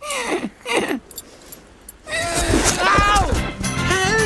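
Two short falling vocal cries at the start. Background music comes in about halfway through and carries on with a melody over held low notes.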